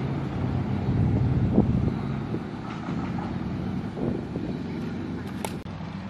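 A motor vehicle's engine running as a steady low hum, loudest about a second in and then slowly fading.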